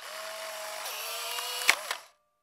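A steady mechanical whirr like a small motor running, its faint tones dropping slightly in pitch about a second in, with one sharp click near the end.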